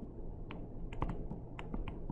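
A digital pen tapping and clicking on a tablet screen while handwriting: a run of sharp, irregular ticks, about seven in two seconds, over a steady low background hiss.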